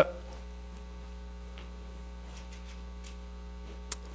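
Steady electrical mains hum in the sound system, with faint rustling as people get to their feet and one short sharp click just before the end.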